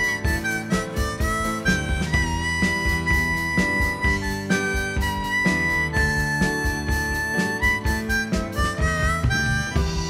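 Harmonica solo, long held notes with short sliding notes between them, over a country band of electric guitar, bass guitar and drums keeping a steady beat.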